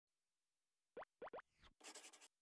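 Faint cartoon sound effects from an animated intro: three quick upward-sweeping pops about a second in, a fainter fourth just after, then a short soft whoosh near the end.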